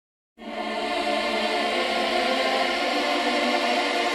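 Song intro: a held, choir-like keyboard chord that starts about a third of a second in and sustains evenly, with no beat or bass yet.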